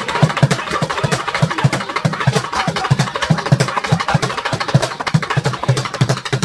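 Fast mochi pounding: a wooden mallet thudding into rice dough in a wooden mortar, with hand slaps turning the dough between strokes, mixed with drumsticks beating on plastic buckets. It goes in a rapid, steady rhythm of about five low thuds a second.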